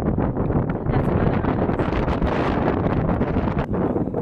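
Wind buffeting the camera microphone on an exposed ridge: a loud, rough, fluttering rush, heaviest in the low end.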